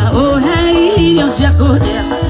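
Live band music over the stage sound system, with a lead singer's wavering, bending melody over a bass line that pulses about twice a second.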